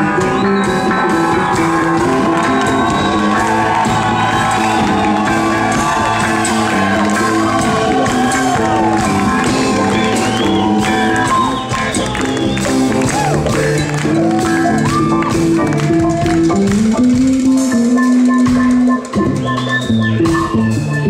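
Live reggae band playing an instrumental passage: electric guitar lines over drums and bass.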